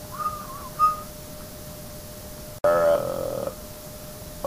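A man whistles briefly: a short wavering note, then a second short note. About two and a half seconds in, a short hummed voice sound follows.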